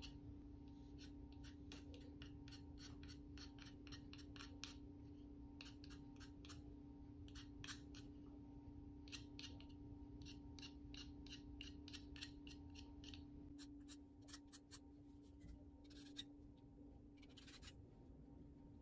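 Faint, quick scratchy strokes of a knife blade scraping a soft pastel stick, shaving pastel dust onto the paper, about two or three strokes a second, growing sparse near the end. A steady low hum runs underneath.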